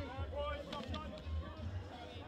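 Music with singing over a pulsing bass beat, mixed with the chatter of a large crowd.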